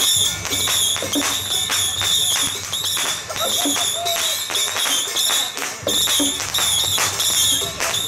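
Temple procession music driven by percussion: strikes beat evenly about three times a second under a steady, slightly wavering high ringing tone, with voices mixed in.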